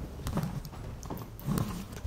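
A few soft footsteps on a hard floor, heard as scattered, irregular taps.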